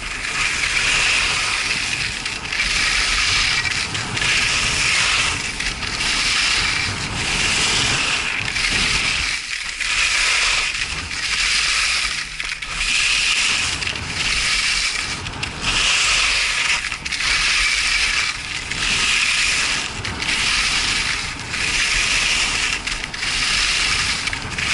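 Skis carving and scraping on hard-packed groomed snow during a run downhill, a hissing scrape that swells and fades with each turn, about every one and a half seconds.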